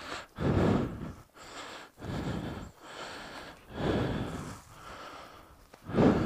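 A man breathing heavily close to the microphone: a louder breath about every one and a half seconds, with softer breaths between.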